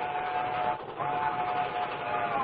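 Cartoon steam locomotive whistle blowing in two steady blasts, the second starting about a second in, over the steady running noise of the train.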